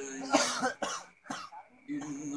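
A person coughing and clearing their throat: three short coughs, the first and loudest about a third of a second in, the last near the middle. A held sung recitation tone breaks off just before them and resumes at the end.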